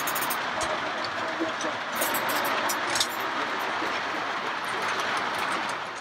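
OO gauge model train running along the layout track: a steady rolling hum from the locomotive and coach wheels, with a few light clicks as the wheels pass over rail joints.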